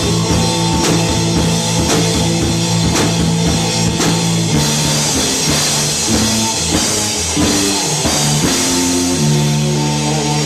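A live rock band playing loud: electric guitars holding sustained notes over a Tama drum kit keeping a steady beat. The notes change about four and a half seconds in and again near the end.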